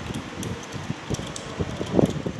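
Copper winding wire rustling and tapping as it is worked by hand into the slots of a pump motor's stator, in short irregular handling noises, with the loudest knock near the end. A steady background hum runs underneath.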